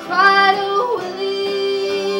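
A folk band playing a ballad live: a woman sings over strummed acoustic guitars and harmonica, with a long steady note held from about a second in.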